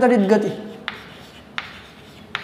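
Chalk writing on a blackboard: faint scratching of the chalk stroke, with two sharp taps of the chalk against the board, about a second in and again near the end.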